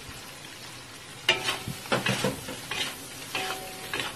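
Shrimp in garlic butter sizzling in a wok, quietly at first; from about a second in, a spatula stirs and tosses them, scraping and knocking against the wok in several quick strokes.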